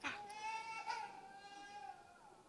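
A newborn baby crying, one long wail of nearly two seconds that sags slightly in pitch at its end, after a short knock at the very start.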